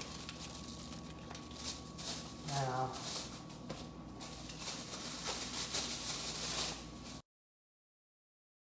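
Faint scattered clicks and light rustling, with one short low voice sound about two and a half seconds in. The sound cuts off suddenly about a second before the end.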